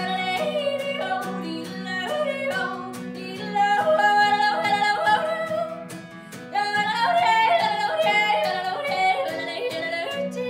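A woman yodeling over her own strummed acoustic guitar, her voice leaping up and down in pitch in quick steps. Two louder, higher yodel phrases come in, the first about three and a half seconds in and the second from about six and a half seconds, with a short drop in between.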